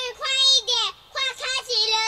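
A high, child-like voice sings a short jingle phrase in a few held, stepping notes, with a brief break about a second in.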